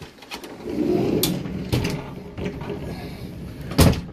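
Motorhome bedroom's sliding door being pulled shut: a rolling noise along its track for a couple of seconds with small clicks, then a sharp knock near the end as it closes.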